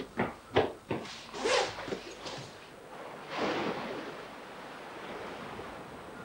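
Sea surf breaking on coastal rocks: a surge of breaking wave about three and a half seconds in, settling into a steady wash. A few short knocks come in the first second and a half.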